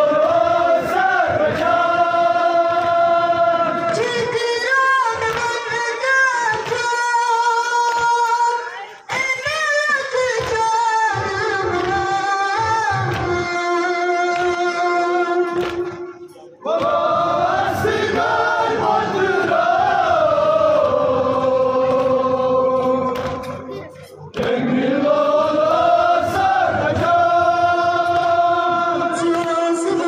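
Kashmiri nowha, a Shia mourning lament, sung by male voice in long, held melodic phrases, with brief pauses between phrases about 9, 16 and 24 seconds in.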